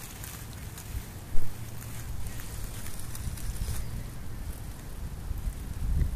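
Wind buffeting the microphone with a steady low rumble, over faint rustling of dry grass and nest fur being parted by hand. A single loud thump of handling comes about a second and a half in.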